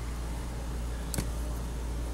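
Plastic condiment squeeze bottle being handled upside down over a blender jar: a single sharp click about a second in, over a steady low hum.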